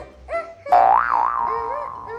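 Bouncy children's background music with short arched notes, and a loud cartoon "boing" sound effect about 0.7 s in that jumps up in pitch, wobbles and settles as it fades.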